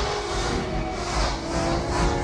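Film soundtrack: a loud, steady rushing whoosh of something flying at great speed, over sustained orchestral notes.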